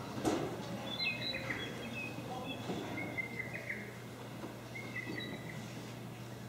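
Faint birdsong played as a theatre sound effect: a run of short, high chirps and whistles starting about a second in, over a steady low electrical hum, with a soft knock near the start.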